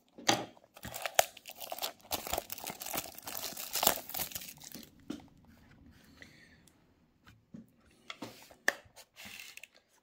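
Clear plastic shrink wrap on a small cardboard model-car box being slit with a knife and pulled off, crinkling and tearing for about five seconds. It is followed by a quieter pause and a few scattered clicks of handling near the end.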